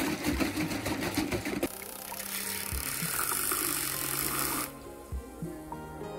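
Handheld battery milk frother whisking coffee in a ceramic mug: it starts suddenly with a rattly buzz, settles after a second or two into a steadier hiss, and stops about four and a half seconds in. Soft background music plays underneath.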